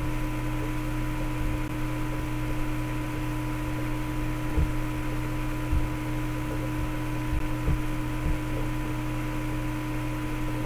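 Steady electrical hum with hiss, with a few soft low knocks scattered through it.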